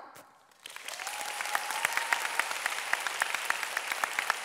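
Audience applauding: after a brief hush, clapping starts under a second in, swells and keeps on steadily.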